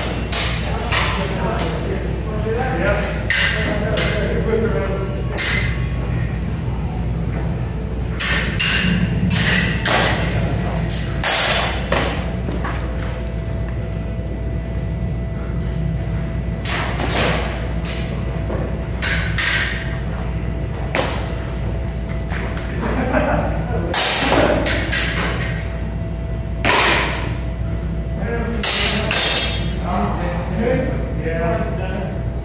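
Steel practice swords clashing during sparring: short clusters of sharp metallic strikes every few seconds, ringing in a large hall over a steady low room hum.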